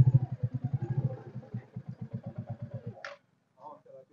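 Royal Enfield Bullet single-cylinder engine running at low revs with an even thump, about eight beats a second, fading and stopping about three seconds in as the bike is shut off. A sharp click follows.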